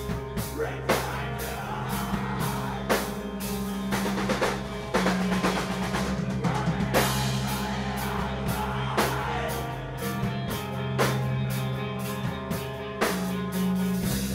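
Rock band playing an instrumental passage: drum kit hits over held low bass and chord notes.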